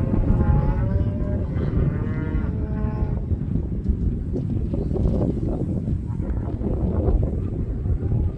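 Beef cattle mooing, a drawn-out call in the first three seconds or so, over a steady low rumble of wind on the microphone.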